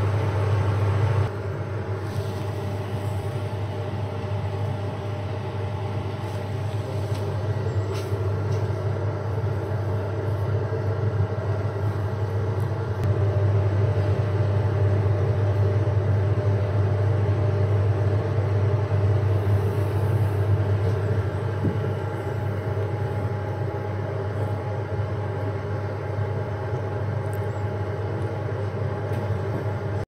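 Steady low machine hum with a set of even overtones, holding level throughout, easing slightly about a second in; a few faint clicks over it.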